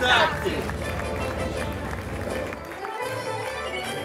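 Brief voices at the start over a steady low background hum, then music coming in about three seconds in.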